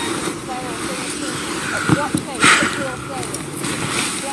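A couple kissing, with soft wordless murmurs and breaths over a steady background hiss; a breathy burst comes about two and a half seconds in.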